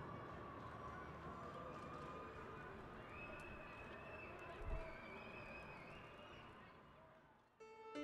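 Faint outdoor city background noise, a steady distant rumble of traffic with a few faint held tones and a single thump about halfway, fading away. Music with piano notes begins right at the end.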